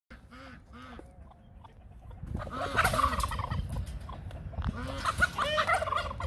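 Domestic tom turkey gobbling: two short calls, then longer runs of quick repeated calls through the middle and near the end.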